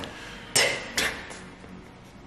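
Two short, sharp impact sounds about half a second apart, each with a brief ringing tail; the first is the louder.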